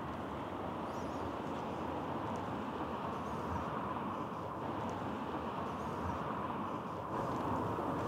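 Steady background hum of road traffic passing by outdoors, with a few faint high bird chirps about a second in.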